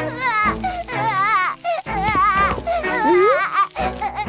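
A cartoon child's voice crying without words, its pitch wavering up and down in short sobs, over background music, with a rising slide about three seconds in.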